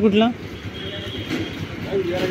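A man's voice trailing off, then general street background with faint voices in the distance.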